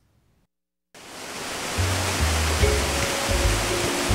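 Water rushing through the gates of a canal lock, a steady rush that fades in about a second in after a moment of silence. Background music with a low pulsing bass comes in under it about two seconds in.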